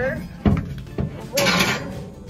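Wooden roost pole knocking against the coop's wooden framing as it is shifted into place: two sharp knocks, then a longer scrape of wood on wood near the end.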